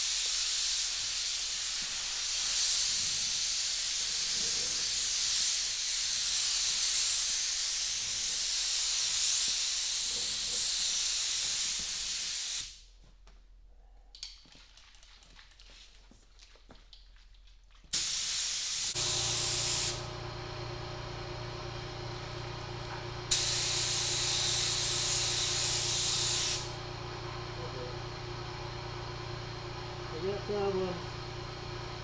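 Gravity-feed spray gun hissing as it sprays clear coat loaded with silver metal flake: one long pass of about twelve seconds, then after a pause a one-second burst and another pass of about three seconds. The flake is too big for this gun and is plugging its tip. About two-thirds of the way through, a steady low hum with a fixed pitch starts and carries on.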